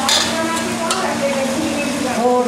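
Metal spatula stirring and scraping chopped tomatoes frying in ghee in a steel kadai, over a steady sizzle, with sharp scrapes near the start and again about a second in.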